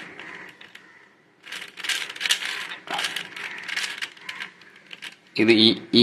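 The plastic layers of a 4×4 Rubik's cube are turned quickly by hand as a move sequence is run through, clicking and clacking. The turns come in three quick runs.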